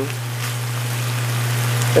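Diced beef chuck sizzling steadily in a pan as it sautés in the last of its own juices, stirred with a wooden spoon, over a steady low hum.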